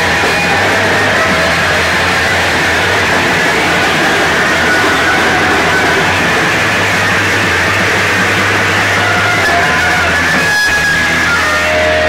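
A garage-punk band playing live, loud and distorted: a dense wall of electric guitar and bass noise that holds steady, with a brief drop about ten and a half seconds in.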